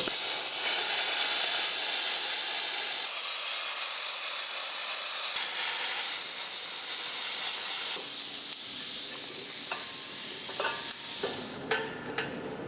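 Plasma cutter, a PT31 torch on a Withus MP-200S multi-process welder running on compressed air, cutting through 12 mm steel plate: a steady hiss of the air-plasma arc that stops about eleven seconds in as the cut is finished.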